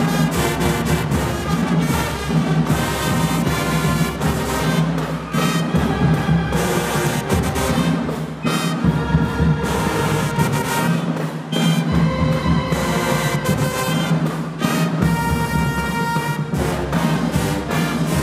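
High school marching band playing in a gymnasium: sousaphones, saxophones, trumpets and flutes together, with drum strokes running through the music.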